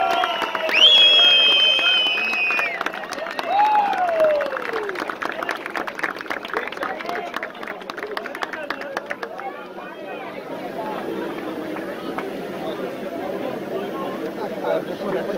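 Audience cheering and clapping: a long high cheer near the start and a shout that falls in pitch, over fast applause that dies down into crowd chatter about ten seconds in.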